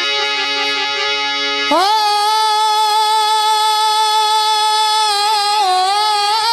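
Harmonium playing sustained chords, then a little under two seconds in a singer comes in with one long held note over it, sliding up into the note and wavering near the end.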